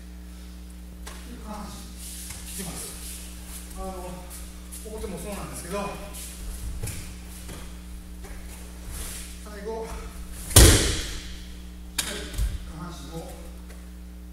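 A body slamming down onto tatami mats as an aikido partner is thrown into a breakfall: one loud slap about two-thirds of the way through with a short echo from the hall, then two lighter thuds. Faint voices and a steady electrical hum sit underneath.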